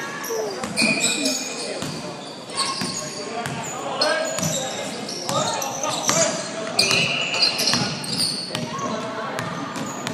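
Basketball game in a large echoing hall: sneakers squeaking in short high chirps on the hardwood court, the ball bouncing, and players' and spectators' voices.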